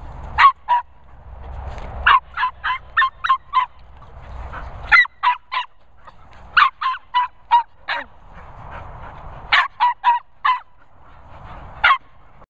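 Border terrier yapping excitedly while playing with other dogs: rapid, high-pitched yaps in quick bursts of three to eight, a burst every second or two.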